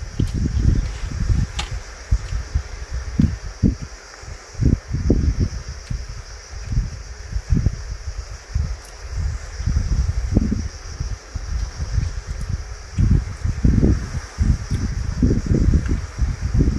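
Wind gusting over the microphone: an uneven, rumbling buffeting that swells and drops every second or so.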